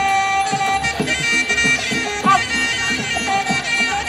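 Traditional Muay Thai ring music (sarama): a reedy Thai oboe (pi chawa) holds and bends its notes over a quick, steady beat of hand drums.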